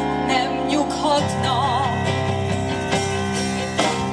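Live folk-rock band playing: strummed acoustic guitar over bass guitar and drums, with a wavering held melody line about a second and a half in.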